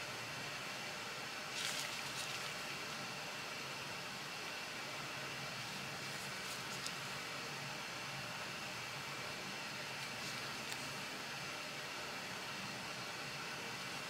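Steady faint hiss of room tone, with a few soft clicks and rustles from a folding knife being handled in gloved hands. The clearest click comes about a second and a half in.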